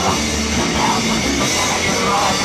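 A rock band playing loud, heavy music, with the drum kit and cymbals to the fore.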